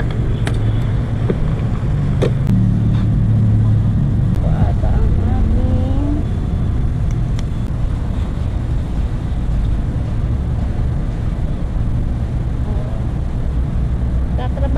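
Wind rumbling steadily on the action camera's microphone, with a few sharp clicks and knocks in the first three seconds as the camera is handled. Faint voices come through once or twice.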